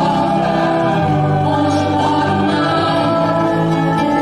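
Live devotional song: several voices singing together in long held notes over acoustic guitars.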